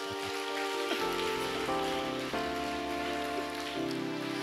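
Background music of held chords that shift to new chords several times, over a steady hiss.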